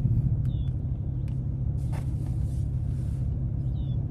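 Steady low rumble of a vehicle's engine and road noise heard inside the cab, with a soft hiss lasting about a second near the middle and a few faint clicks.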